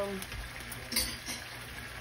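Butter and broth simmering in a stainless saucepan on an electric coil burner, a soft steady bubbling hiss, with a couple of faint clicks near the middle.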